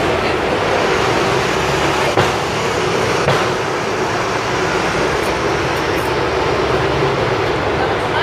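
Steady traffic noise of idling and passing vehicles with a low, even hum, broken by two short knocks about two and three seconds in.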